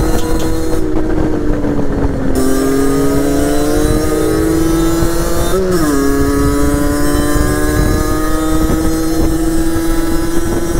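Derbi Senda X-Treme 50cc two-stroke engine running at high revs under way. Its pitch drops sharply twice and then climbs again, as with upshifts.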